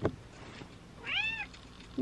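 Domestic tortoiseshell cat giving one short meow about a second in, rising and then falling in pitch. A brief click just before it.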